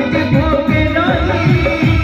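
Loud jatra song played through a PA system: a male voice singing over a quick, steady drum beat and accompanying instruments.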